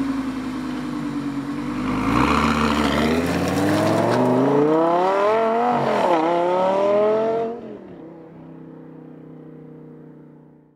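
Supercharged Lamborghini Gallardo LP560-4 V10 accelerating hard as it drives away, its engine note climbing steadily with one gear change about six seconds in. The sound then drops away sharply about seven and a half seconds in.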